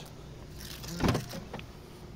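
Boot lid of a 2007 BMW 320d saloon being released and opened: one latch clunk about a second in, with a small click after it.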